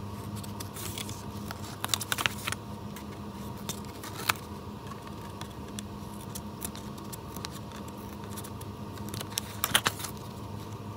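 Small craft scissors snipping paper, trimming the corners of paper glued over a chipboard cover: a few sharp snips about two seconds in, one around four seconds, and a quick cluster near the end, over a steady low hum.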